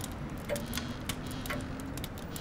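A clock ticking, about one tick a second, over a faint steady low hum.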